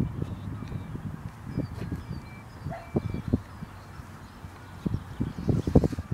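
Wind buffeting the microphone in uneven low gusts, with faint, short high-pitched chirps between about one and three seconds in.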